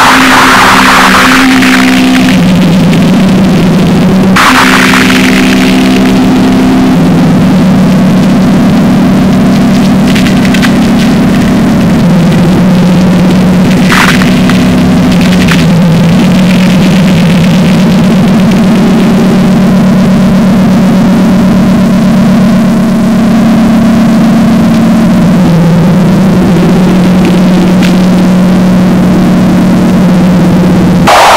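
Instrumental sludge/doom metal passage: heavily distorted electric guitar holding low droning notes several seconds each, stepping from pitch to pitch, with no vocals. Short noisy crashes cut in at about 4 s and 14 s.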